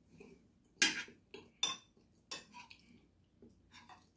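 Metal spoon and fork clinking and scraping against a ceramic plate while eating: several sharp clinks, the loudest about a second in.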